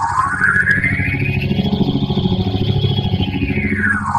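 Digitally effected audio: a tone sweeps upward for about two seconds, holds high, then slides back down near the end, over a low, rapidly pulsing buzz.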